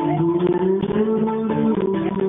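Live acoustic band music: acoustic guitar playing with cajon strokes under sustained, gliding melody notes.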